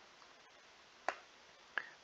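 Two single sharp clicks from computer keyboard keys, one about a second in and one shortly before the end, over faint room tone.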